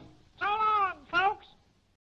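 A cartoon voice giving two short calls, the first longer, each rising and then falling in pitch, heard just after the music stops.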